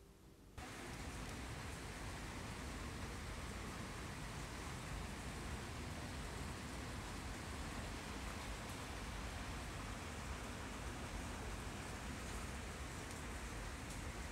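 Steady rain falling outdoors, a continuous even hiss that comes in abruptly about half a second in.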